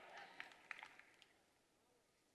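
Near silence: a few faint ticks in the first second, then nothing.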